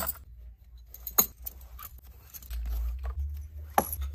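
Cloth drawstring pouches holding metal drinking straws being pulled from plastic storage bins: fabric rustling, with sharp clinks and taps, the loudest about a second in and near the end.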